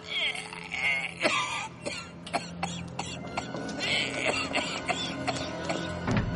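Film soundtrack music with short non-word vocal sounds from a character in the first second or so, and many sharp clicks and knocks scattered throughout.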